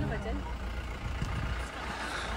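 Car driving steadily, engine and road noise heard from inside the cabin as a low, even rumble; a voice trails off right at the start.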